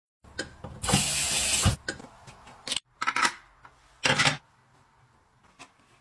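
Sink-mounted glass rinser spraying water jets up into a glass decanter pressed down on it: a hiss of about a second, then two shorter bursts, with small clicks and knocks between.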